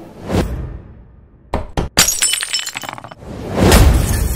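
Glass-shattering sound effect from an outro sting, with music: a whoosh, then sharp crashes about a second and a half in, a spray of tinkling shards, and a second loud whoosh near the end.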